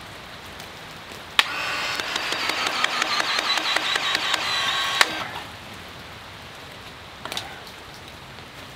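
Cordless PEX-A expansion tool running for about three and a half seconds, expanding the end of one-inch PEX tubing and its expansion ring. It sounds as a motor whine with rapid, regular clicks, starting and stopping with a sharp click.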